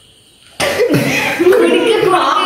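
Quiet for about half a second, then a man coughs suddenly after gulping a drink, followed by laughter and voices.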